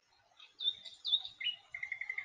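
Bird chirping: two short high chirps, then a lower, fast, even trill starting about one and a half seconds in.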